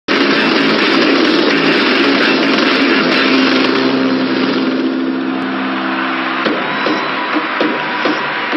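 A vehicle engine running, mixed with music in a film soundtrack. A steady low drone holds from about four seconds in and breaks off about six and a half seconds in.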